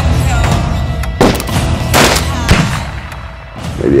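Gunshots from a western film's soundtrack over dramatic trailer music: several sharp shots, the clearest about 1.2, 2 and 2.5 seconds in. A man's voice begins just before the end.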